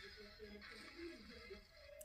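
Near silence with faint, thin music from a video ad playing through the Sonim XP8 phone's speaker, which is still soaked with water from the thawed ice.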